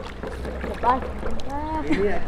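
Pool water lapping and sloshing as a child wades through it, under a steady low rumble of wind on the microphone, with short calls from voices.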